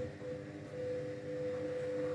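A washing machine running, giving a steady hum with a constant mid-pitched tone.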